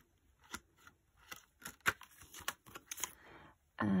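Scattered light clicks and soft rustles of plastic zip envelopes and pages being handled and turned in a ring-bound cash binder. The sharpest click comes a little under two seconds in.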